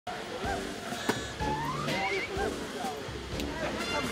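Several people talking at once, indistinct chatter, with a few sharp clicks, the loudest about a second in.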